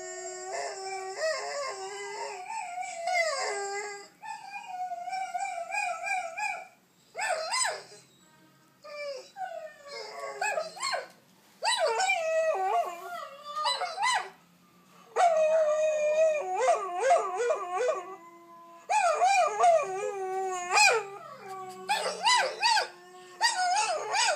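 Small shaggy dog howling: a series of long, wavering howls that rise and fall in pitch, broken by a few short silent pauses.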